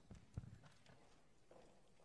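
A few faint footsteps on a hard stage floor, two soft knocks in the first half second, then quiet room tone.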